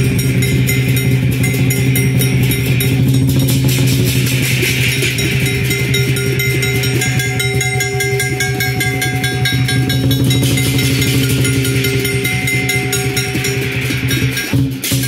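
Chinese lion dance percussion: a big drum beaten in a fast, continuous rhythm with clashing cymbals and a ringing gong.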